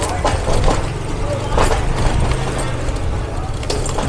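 Motorbike moving slowly down a rough alley: a low, steady engine hum under rumbling road noise.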